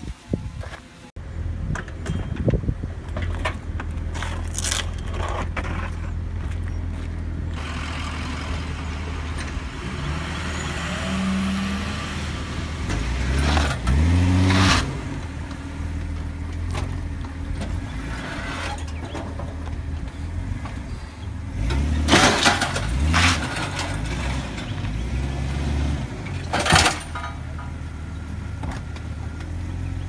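A vehicle engine idling steadily, revved briefly about halfway through and again a few times later, with several sharp metallic knocks near the end.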